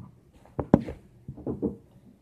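A few light taps and knocks of things being handled and set down, with one sharp knock a little before the middle.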